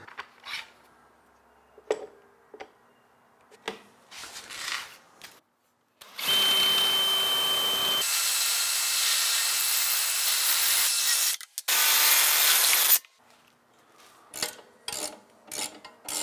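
DeWalt XR cordless drill boring a bolt hole through a steel mounting bracket into the planer's base. It starts about six seconds in and runs for about five seconds, with a steady whine at first and then rougher cutting noise. After a brief stop it runs again for about a second. Scattered handling clicks and knocks come before and after.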